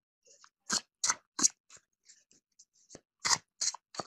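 Stiff cardboard oracle cards being handled: short crisp snaps, in two groups of three, with near silence between.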